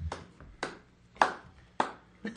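A few slow, separate handclaps, about one every half second.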